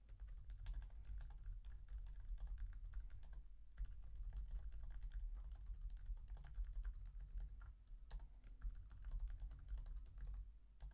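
Typing on a computer keyboard: quick, irregular key clicks with brief pauses about three and a half seconds in and again near eight seconds, over a steady low hum.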